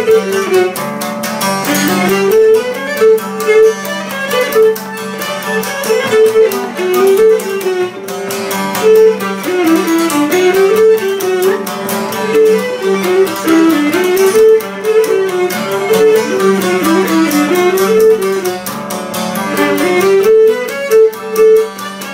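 Cretan lyra bowing a stepping folk melody over a strummed Cretan laouto accompaniment, with a steady drone note underneath. Traditional Cretan instrumental music, with no singing.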